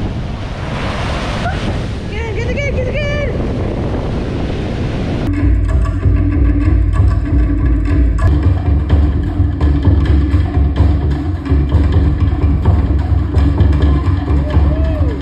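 Surf washing up a beach with wind buffeting the microphone and a short voice calling out, then, about five seconds in, a sudden cut to louder music with heavy bass and drums that carries on to the end.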